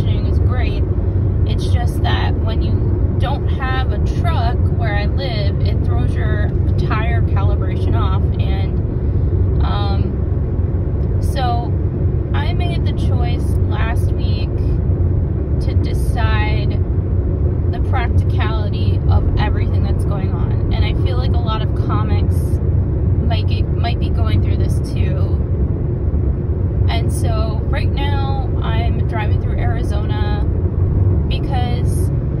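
Hyundai car cabin noise while driving at road speed: a steady low rumble of tyres and engine. A person's voice comes and goes over it.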